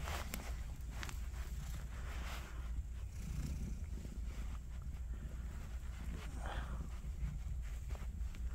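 A domestic cat purring, a steady low rumble, while a hand strokes its neck, with faint rustles of fingers in its fur.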